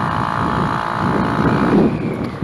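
Tuned Gilera DNA 180 scooter's two-stroke single-cylinder engine running at a steady pitch under way, with wind rumbling on the microphone.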